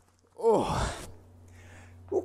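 A man's sigh: one breathy voiced exhale that falls in pitch, starting about half a second in and lasting about half a second, followed by a faint steady low hum.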